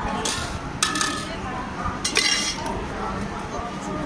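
A steel spoon clinking against stainless steel pots and tins: three short metallic clinks with brief ringing, about a quarter-second, one second and two seconds in.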